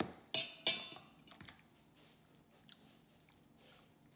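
Two metal forks clinking and scraping against a stainless steel mixing bowl as cooked pork is pulled apart: three sharp ringing clinks in the first second, then only faint soft sounds of the meat being worked.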